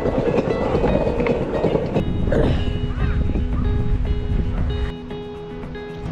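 Skateboard wheels rolling over stone paving, a rough rumble for about the first two seconds. Background music with held notes takes over after that.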